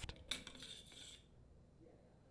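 Faint metallic clink and scrape of a top-load washer's old clutch being lifted off the steel transmission shaft, lasting about a second.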